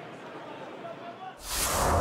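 Stadium crowd murmur with indistinct voices. About one and a half seconds in, a loud broadcast transition whoosh sound effect cuts in as the graphic's spinning rugby ball sweeps across the screen.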